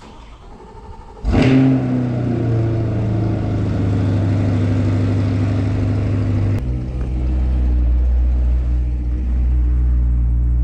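Chevrolet Corvette C8's 6.2-litre V8 starting about a second in with a sharp flare of revs, then settling into a steady high idle. About two-thirds of the way through the note drops to a deeper, lower rumble as the car pulls out of the garage.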